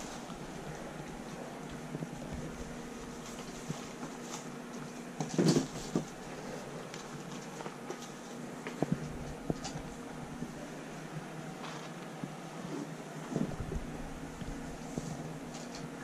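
A steady low mechanical hum, like a fan, under soft intermittent rustling and light knocks of hay being handled, with a louder rustle about five seconds in.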